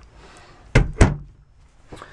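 A trailer's bathroom closet door being pushed shut, giving two sharp knocks about a quarter second apart near the middle; the second knock is the louder.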